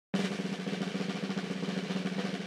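Snare drum roll, a rapid, even rattle of strokes starting a moment in.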